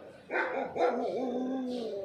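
A dog barking once, then a drawn-out howl lasting more than a second.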